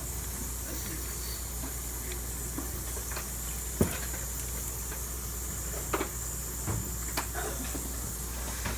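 A steady hiss over a low hum, with a few light clicks as the stone cast and wax instrument are handled, about four, six and seven seconds in.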